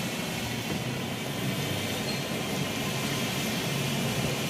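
Small truck driven flat out along an underground tunnel, giving a steady, even running noise with a faint low hum.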